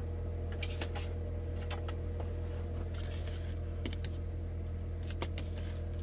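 Scattered light clicks and taps of metal spoons being handled and set down on the work mat, over a steady low hum.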